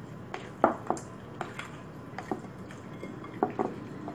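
A utensil knocking and scraping against a glass mixing bowl while stirring a bread dough, in a string of short, irregular clicks. The bowl knocks on the countertop as it is worked.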